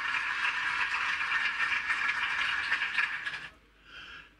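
A steady rattling hiss, like a shaker or rattle sound effect, lasting about three and a half seconds and then cutting off suddenly.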